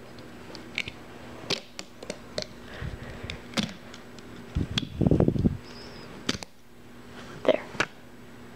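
Small clicks and rustling of rubber loom bands and plastic loom pegs being handled as a rubber-band figure is pulled off the loom, with a louder muffled rustle about five seconds in.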